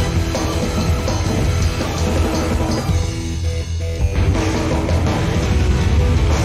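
Live hard-rock band playing loud, with drums, bass and electric guitars in a dense mix. The upper instruments drop out briefly about three seconds in, over the held low end, before the full band comes back in.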